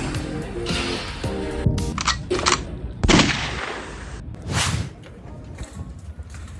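Background music with a run of sharp percussive hits, the loudest about three seconds in.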